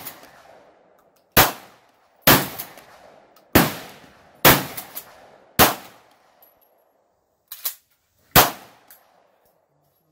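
Mossberg shotgun fired six times, the first five about a second apart and the last after a longer pause, each blast followed by a short fading echo. A lighter double knock comes shortly before the last shot.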